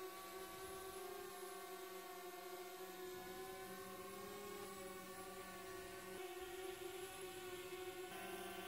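DJI Spark quadcopter's propellers whining faintly and steadily as it flies itself back in return-to-home, a little louder near the end.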